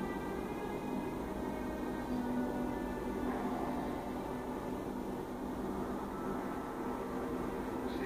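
Steady room hum with faint background music.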